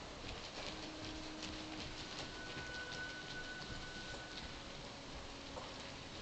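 Hoofbeats of a loose horse moving around an indoor arena, irregular soft thuds on the arena footing.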